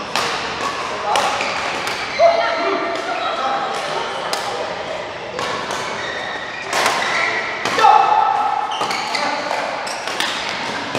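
Badminton rally: sharp racket strikes on the shuttlecock about once a second, echoing in a large sports hall.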